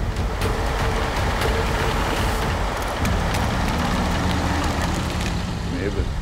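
A dense, steady roaring rumble like storm wind, a trailer sound effect, with a low held drone under it.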